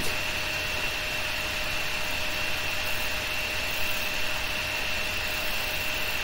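Steady background hum and hiss with a faint, steady high-pitched whine running under it, unchanging throughout.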